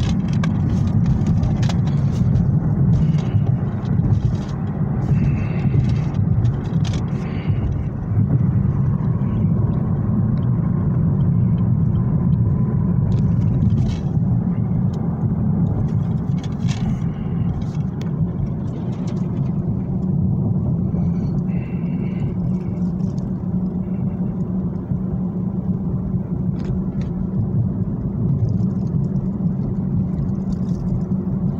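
Steady low rumble of a car's engine and road noise heard inside the cabin on the move. Scattered light clicks and rustles from plastic DVD cases and a bag being handled sound over it.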